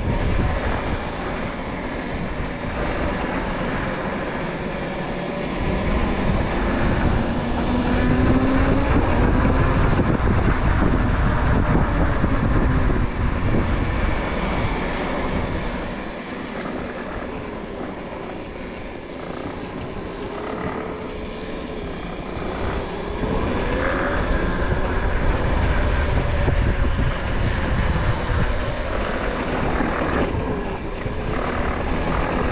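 RFN Rally Pro electric dirt bike's motor whining, its pitch rising and falling as the bike speeds up and slows, over wind rushing on the microphone that grows louder with speed.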